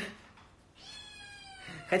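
A pet cat meowing once: one drawn-out call of about a second that starts about a second in and falls slightly in pitch.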